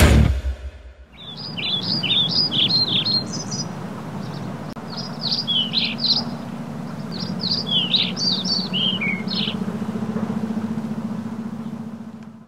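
A loud band chord breaks off right at the start. Then small birds chirp in quick strings of high, varied notes, in two spells with a short gap between, over a steady low hum.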